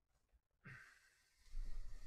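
A person lets out a short sigh about half a second in. About a second and a half in, a louder low rumbling noise begins and keeps going.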